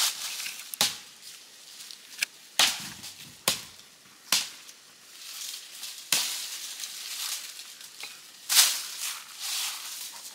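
Dry fallen leaves and brush rustling and crunching as someone works in undergrowth by hand, with about seven sharp snaps or knocks at irregular intervals, the loudest near the end.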